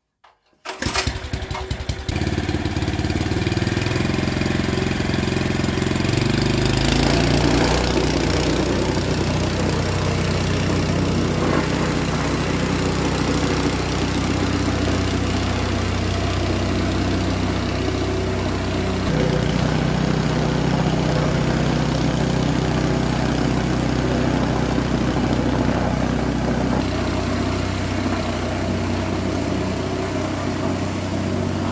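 Scheppach petrol plate compactor started about a second in, sputtering briefly before it catches and then running steadily at a loud, even pitch as its vibrating plate is worked over newly laid paving blocks to compact them.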